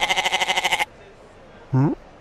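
Goat bleating once, a quavering call lasting just under a second. Near the end there is a short rising vocal sound.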